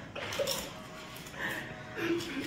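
Crisp fried papad crunching as it is bitten and broken: a few short crackles.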